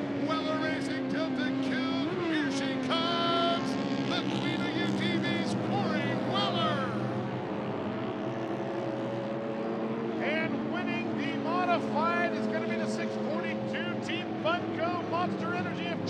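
Several off-road racing UTV engines running at high revs, their pitch repeatedly rising and falling as they race along the dirt track and over jumps.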